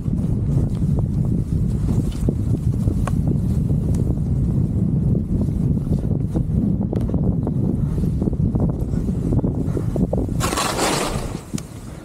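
Wind buffeting an action camera's microphone while skiing fast through powder, a dense flickering rumble with scattered small knocks. A brief loud hiss about ten seconds in, then the rumble drops lower near the end.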